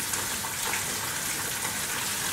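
Steady hiss of background noise with no distinct events.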